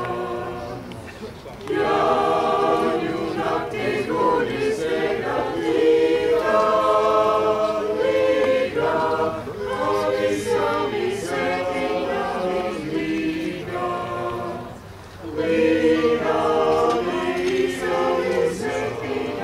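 Mixed choir of men's and women's voices singing unaccompanied in sustained chords, with brief breaks between phrases about a second and a half in and again about fifteen seconds in.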